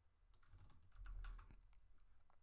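Faint keystrokes on a computer keyboard, a quick run of clicks in the first half, with a soft low thump about halfway through.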